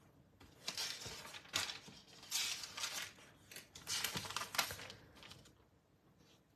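Thin Bible pages being turned and smoothed by hand: several soft paper rustles, the strongest about two and a half and four seconds in.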